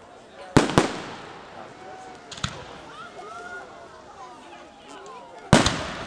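Aerial fireworks shells bursting: two sharp bangs in quick succession about half a second in, a weaker pop around two and a half seconds, and another loud bang near the end, each with a short rumbling tail. People chatter in the background.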